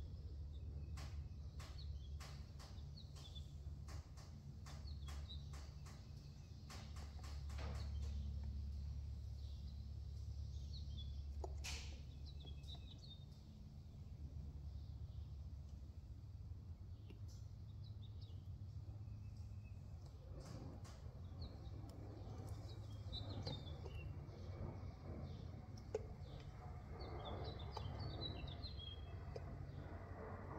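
Faint background birds chirping, scattered short calls that come thicker near the end, over a low steady hum. A run of light clicks sounds through the first several seconds.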